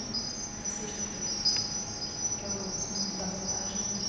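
Electronic soundtrack of an audiovisual artwork: several thin, high-pitched sustained tones overlapping and fading in and out, sounding like crickets, over faint low hums and a couple of small clicks.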